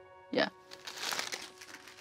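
Thin deli paper rustling and crinkling for about a second as it is handled, over soft background music.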